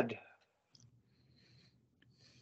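The tail of a man's spoken word fading out, then near silence: faint background noise on a video-call line, with one small click.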